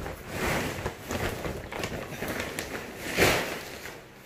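Soft grass broom swishing over a concrete floor in several irregular strokes, the loudest about three seconds in.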